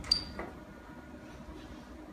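A sharp click with a short high ring, then a fainter click, from the controls of an overhead X-ray tube and collimator as it is set up for a chest exposure.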